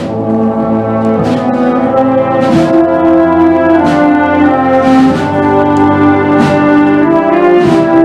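Concert band playing a slow funeral march: sustained brass and woodwind chords, with a percussion stroke about every second and a quarter. It grows louder over the first couple of seconds.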